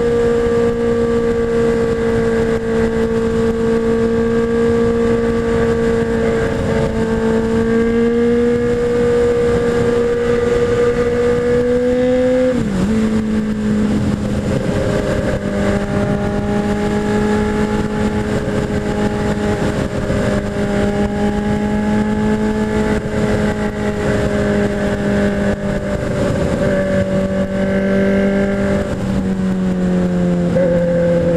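Honda Hornet's inline-four engine cruising at a steady highway pitch, heard from the rider's helmet, with wind rushing over the helmet-mounted camera. About halfway through the engine note dips briefly and settles a little lower, and near the end it falls again as the bike slows.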